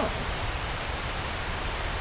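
Steady rushing outdoor background noise with a low rumble underneath.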